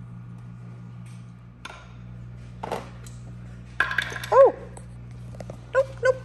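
A toddler's brief vocal sound about four seconds in, the loudest moment, amid scattered light clicks and knocks over a low steady hum.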